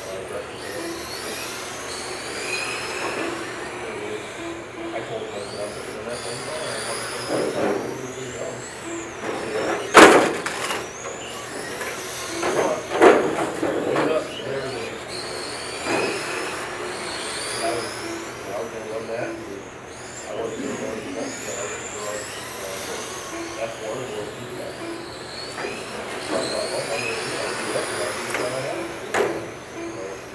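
Small electric RC touring cars racing on a carpet track, their motors whining up and down in pitch as they accelerate and slow through the corners. A loud sharp hit comes about ten seconds in, and a few smaller knocks follow later.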